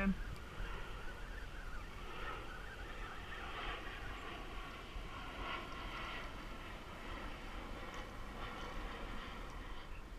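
Steady wind rumbling on the microphone over choppy water during a fish fight from a kayak, with a faint shifting hiss and whir in the middle range.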